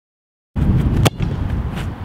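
Dead silence for about half a second, then wind rumbling on the microphone outdoors with one sharp thud about a second in: a football being kicked.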